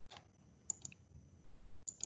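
Faint clicking at a computer: a handful of separate sharp clicks, such as from a mouse or keys, over a faint steady high whine.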